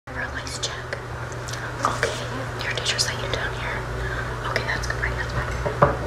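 A girl whispering close to the microphone, over a steady low hum, with one sharp click near the end.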